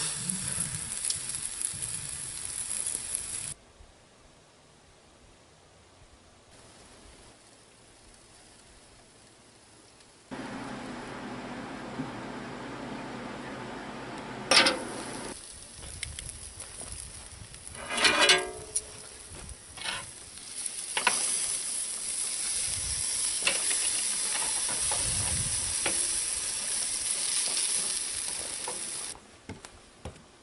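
Spare ribs and a foil packet of vegetables sizzling over hot coals on a grill. The sizzle drops away for several seconds partway through, then returns with a few knocks and a scrape.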